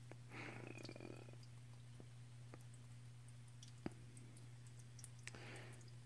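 Near silence: a faint steady low hum, with one sharp faint click a little before the four-second mark.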